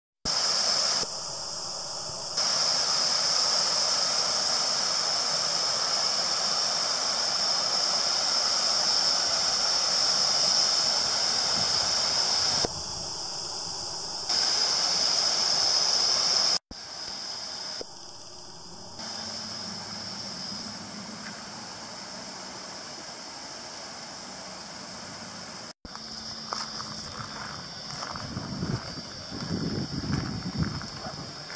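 Steady rushing of a garden waterfall pouring into a pond, dropping abruptly in level a few times and cutting out briefly twice. Near the end the sound turns more uneven, with low thumps.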